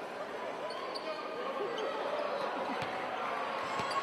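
A basketball bouncing on a hardwood court, with several dribbles in the second half, over the chatter of voices in a sports hall.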